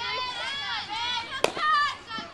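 High-pitched shouting voices calling out, rising and falling in pitch, with a single sharp smack about one and a half seconds in.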